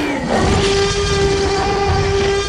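Produced advertising sound effect: a loud rushing swell that settles, about half a second in, into one steady held tone over a rumbling low end.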